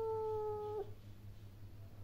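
A cat's long, drawn-out meow, one held call slowly falling in pitch, which stops abruptly less than a second in.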